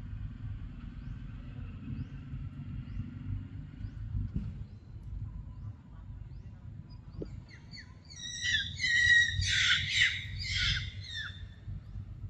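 A bird calling in a quick series of short, high notes, starting about eight seconds in and lasting about three seconds, over a low steady background rumble.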